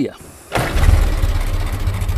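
Ford Model T four-cylinder engine starting about half a second in and settling into a steady, evenly pulsing run.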